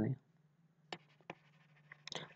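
Light taps and scratches of a stylus on a pen tablet as a word is handwritten: two short ticks about a second in, over a faint steady low hum.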